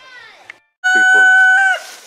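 A rooster crowing once, loud: a single held call of about a second, steady in pitch, that drops away at the end. It follows the fading tail of music and a short break in the sound.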